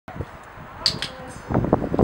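Two short, high clicks about a fifth of a second apart, a little under a second in, then a louder voice starts in the last half second.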